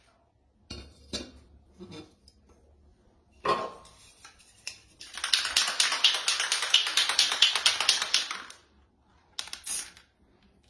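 Aerosol spray paint can being shaken, its mixing ball rattling rapidly and evenly for about three and a half seconds. Before that come a few scattered clicks and knocks.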